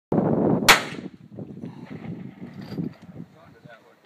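A single gunshot a little under a second in, followed by a rumbling echo that dies away over about two seconds.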